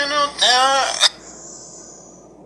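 A man's voice from a phone app advert, with drawn-out pitched notes, cut off abruptly about a second in; faint hiss follows.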